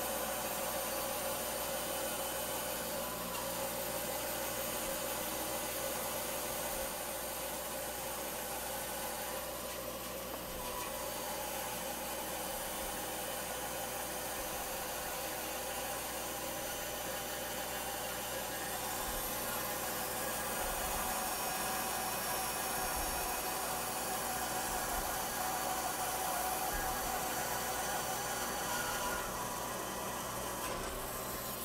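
Bandsaw running steadily while resawing a board about eight inches wide, the blade cutting along the length of the board; a constant hum with a steady whine over a noisy hiss.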